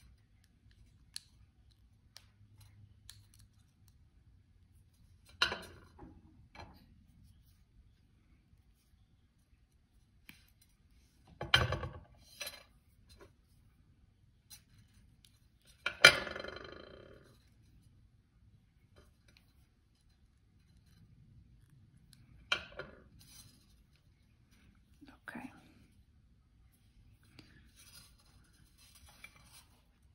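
Small metal clicks and ticks of steel pliers and thin copper wire being handled, with a few sharper clacks at intervals. The loudest clack, about halfway through, has a short ringing tail, as the pliers are set down on the hard countertop.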